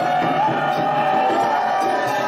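Candomblé ritual music: hand drumming and an iron bell under voices singing, with one long note held through.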